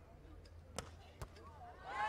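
Two sharp hits of hands on a beach volleyball during a rally, less than half a second apart, the second louder, over a faint background.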